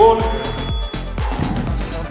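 Upbeat dance backing music with a steady, fast beat. A short, clear tone swoops up and sounds right at the start, the loudest moment.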